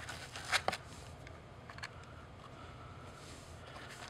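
Faint handling noises: a few light clicks and rustles as small items and a cable are lifted out of a foam-lined hard case, over low room hiss.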